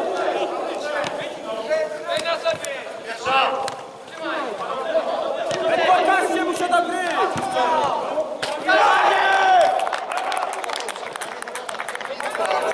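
Footballers shouting and calling to each other during play, with a louder burst of several voices shouting together about nine seconds in.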